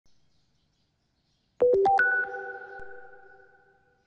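Short electronic chime sting opening a news report: after near silence, four quick notes about one and a half seconds in, then a ringing tail that fades away over about two seconds.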